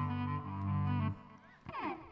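Cello bowing a sustained low note for about a second that then stops, followed by a brief, fainter sliding sound near the end.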